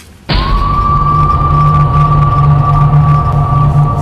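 Tense film background score cutting in suddenly just after the start and then playing loudly: a single held high note over a low pulsing drone.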